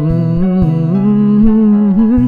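A male voice humming a long held, wavering note, rising about half a second in, over a strummed acoustic guitar.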